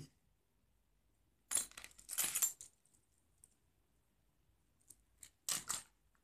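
Small metal cabinet hinges and hinge-built track links clinking and clattering as they are handled and set down on a table. There is one clatter from about one and a half to two and a half seconds in, a few light ticks, and a short run of clicks near the end.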